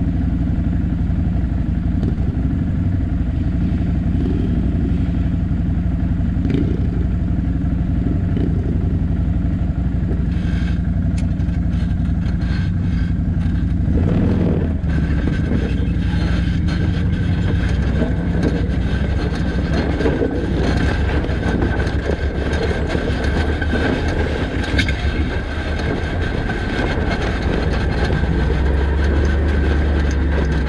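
Can-Am Outlander ATV engine idling steadily, then pulling away about fourteen seconds in and running over rough, rocky ground, with clatter and knocks from the ride.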